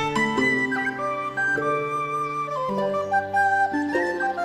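Background music: a flute-like melody of held notes over a sustained bass accompaniment.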